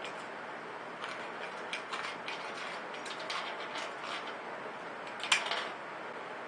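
Hand tin snips cutting around the thin steel rim of a can lid, peeling off a curled strip: a run of small irregular metallic clicks and crunches, with one sharper snap about five seconds in.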